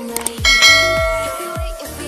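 A short click or two, then a single bright bell ding about half a second in that rings on and fades over a second and a half: the notification-bell sound effect of a subscribe-button animation, played over background music with a steady beat.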